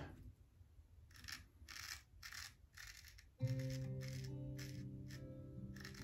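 Straight razor scraping through lathered stubble on the neck in short, faint strokes, about two or three a second. About three and a half seconds in, a held music chord comes in and slowly fades beneath the strokes.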